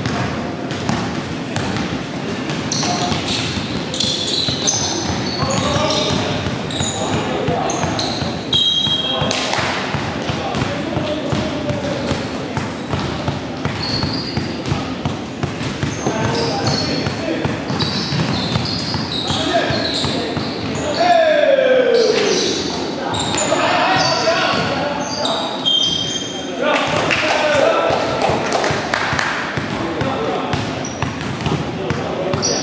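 Basketball game on a hardwood gym floor: the ball bouncing and players' feet on the court, with short high squeaks and players shouting to each other, all echoing in the large hall.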